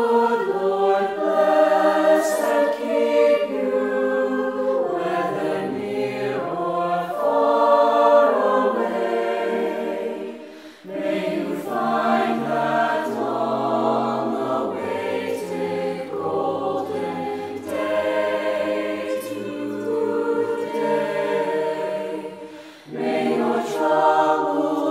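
Mixed-voice high-school choir, boys and girls, singing sustained chords in harmony, in phrases with short breaks about ten seconds in and near the end, low bass notes joining in the middle phrase.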